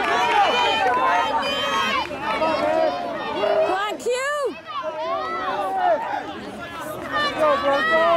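Several spectators' voices overlapping as they shout to runners passing on the track, with one loud, long rising-and-falling yell about four seconds in.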